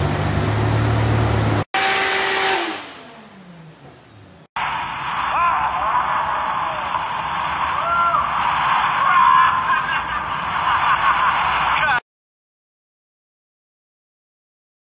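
Turbocharged Toyota 2JZ-GTE straight-six in a Nissan Silvia running hard on a chassis dyno with a steady low drone, cut off abruptly early in the clip; the revs then fall away as it winds down. After a short gap comes a thinner, noisier stretch of several seconds with short rises and falls in pitch, which stops abruptly before the end and leaves silence.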